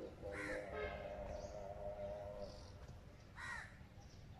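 A crow cawing twice, about three seconds apart, each short call falling in pitch.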